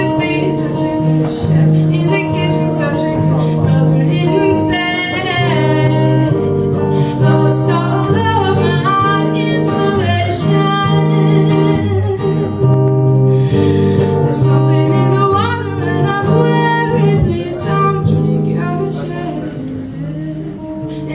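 A woman singing a song while strumming an acoustic guitar, performed live.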